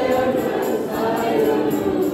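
A church youth choir singing a song in the Kewabi language, several voices together holding long notes that glide slowly in pitch.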